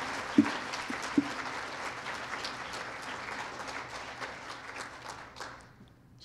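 Audience applauding, with two sharper claps in the first second and a half; the clapping dies away near the end.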